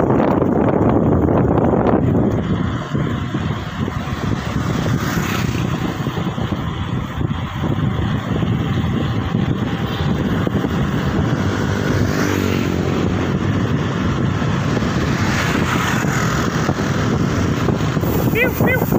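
Steady rush of wind over the microphone of a phone carried on a moving bicycle, mixed with road noise, louder for the first couple of seconds.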